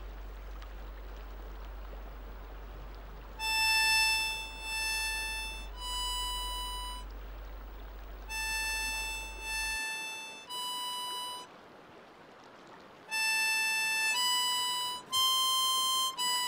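Harmonica playing a slow melody of long held single notes, starting about three seconds in, with a short pause midway. A faint steady hiss comes before it.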